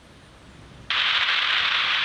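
Air traffic control radio static: a quieter gap, then a steady hiss cuts in suddenly just under a second in and holds, the open channel between transmissions.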